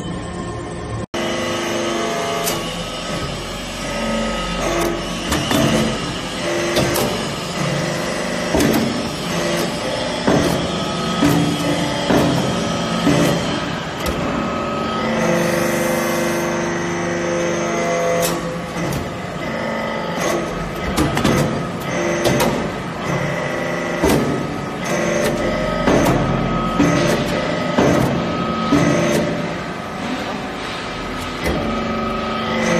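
Hydraulic iron-chip briquetting press running: a steady hum from its hydraulic power unit, under frequent metallic clicks and clanks as the ram compacts the chips into briquettes.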